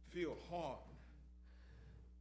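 A man's voice briefly in the first second, a few words or sounds too short to make out, then a pause in which only a faint steady low hum remains.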